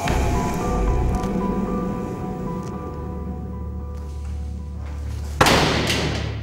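Tense dramatic underscore: a low sustained drone with held tones, broken about five and a half seconds in by a sudden loud whoosh-like hit, the loudest moment, which then fades.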